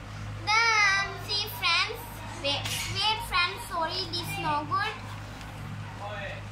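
A young child's high-pitched voice, from about half a second in until about five seconds, over a steady low hum.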